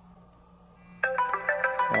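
Smartphone ringing with an incoming call: a tuneful ringtone of repeating notes starts suddenly about halfway through.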